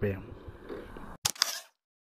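Camera shutter sound: a sharp click followed by a short swish, about a second in, after a low rumble cuts off suddenly to silence.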